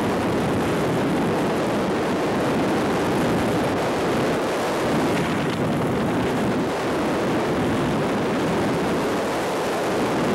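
Steady, loud rush of freefall wind across the camera microphone, an even noise with no engine tone or voices.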